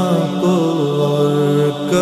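A man singing an Urdu naat, holding one long drawn-out note that steps down slightly in pitch and breaks off briefly near the end before the next phrase begins.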